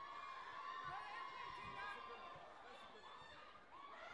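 Voices from the crowd around the mat shouting and calling out, a long held call over the first second and a half, then shorter calls over low crowd chatter.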